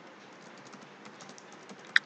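Typing on a computer keyboard: a quick run of light, faint key clicks, with one sharper click near the end.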